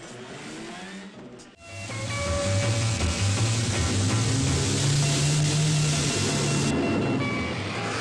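Old film soundtrack of heavy city traffic: a steady hissy roar of engines that comes up loud about a second and a half in, mixed with music.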